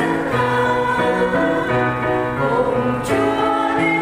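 A choir singing a Vietnamese Catholic hymn: sustained chords in several voices, moving from note to note.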